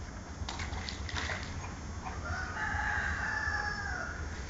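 A drawn-out animal call, one long pitched note from about two seconds in to the end, preceded by a few short sounds.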